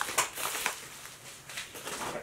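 Kraft padded mailer envelope crinkling and rustling as it is handled and pushed aside, with a few sharp crackles in the first second, then fading.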